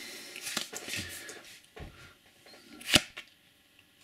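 Cardboard trading cards being leafed through by hand: soft rustling for the first second or so, a few light clicks, and one sharp snap about three seconds in.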